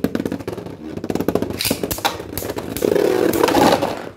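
Beyblade spinning tops whirring on a plastic stadium floor and clashing in a rapid run of clicks and clacks. The clashes grow busiest and loudest near the end, as one top is knocked out to the rim of the stadium and the match point is decided.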